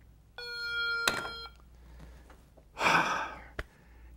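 A mobile phone's electronic beep, one steady tone about a second long with a click partway through, as a call is hung up. Near the end comes a short burst of breathy noise and a sharp click.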